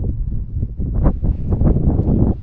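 Wind buffeting the camera microphone: an uneven, gusty low rumble.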